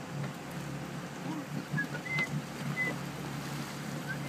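A boat's engine running with a steady low hum, over a wash of wind and water, with a few brief high chirps about two seconds in.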